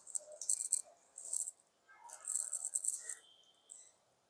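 Wet chicken kebab mixture clicking and squelching as it is pressed and shaped between the fingers, in several short crackly bursts.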